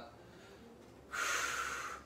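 One deep breath from a man holding a thoracic rotation stretch, lasting nearly a second from about halfway in, with quiet room tone before it.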